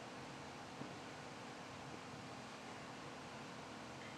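Faint steady whir and hiss with a low hum, typical of a desktop PC's rear case fan running, and one small click just under a second in.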